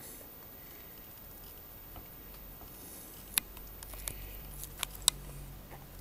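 Handling of a plastic model-kit sprue: quiet rustle with a few sharp plastic clicks, the loudest about three and a half and five seconds in.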